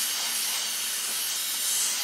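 Dental three-way air-water syringe blowing a steady hiss of air onto a freshly etched and rinsed tooth, driving off the excess rinse water.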